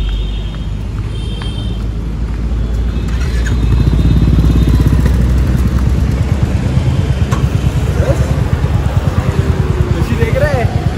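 Motorcycle engine running and being revved. It grows louder about four seconds in, then keeps running with an even pulse.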